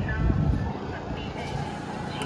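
Low, steady outdoor rumble, with faint distant voices in the first half second.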